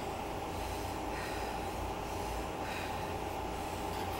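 Elliptical trainer in steady use: a continuous mechanical running noise with a low rumble and a steady tone, with a person breathing hard through the workout.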